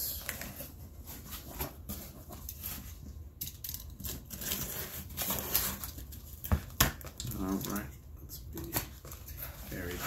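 Box cutter slicing the packing tape on a cardboard shipping box: irregular scraping and ticking of blade and cardboard, with two sharp clicks about six and a half seconds in.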